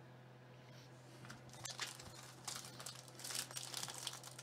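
Foil wrapper of a trading-card pack being torn open and crinkled by hand, faint. It is nearly still for the first second or so, then the irregular crackling builds through the second half.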